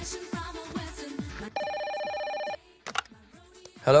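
Desk telephone ringing once, a steady electronic ring about a second long, starting about a second and a half in. Background music with repeated falling notes plays before it.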